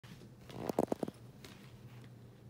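A puppy giving a short run of four quick, low growling grunts while it bites at its own tail.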